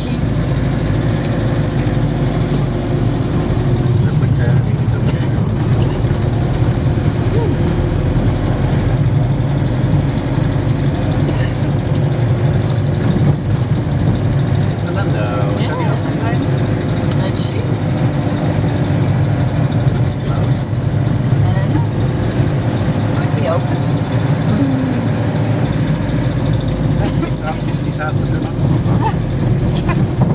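Camper van engine running steadily at low speed with road noise, heard from inside the cab as a constant low drone.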